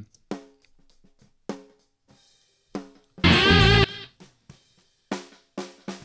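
A snare drum track played back solo from a multitrack drum recording: sparse separate snare hits with faint spill from the rest of the kit, and one much louder, ringing hit about three seconds in. The track labelled "up" turns out to be the microphone under the snare, the snare bottom mic.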